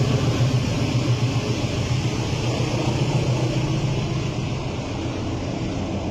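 Crane engine running steadily, a low, even drone with a wash of noise above it.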